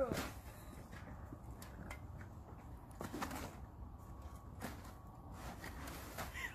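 Faint scattered crunching steps in packed snow, a few isolated knocks over a low steady rumble.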